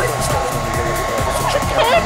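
Handheld hair dryer running steadily, with a constant high whine over its blowing, aimed at wet paint to dry it.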